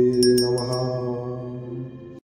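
A low male voice chanting a Hanuman mantra, holding one long, drawn-out syllable that fades toward the end. Three quick, high, bell-like chime strikes ring out in the first second.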